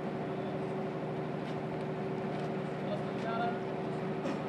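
A steady low mechanical hum of a running motor, holding constant pitch, with faint indistinct voices in the background.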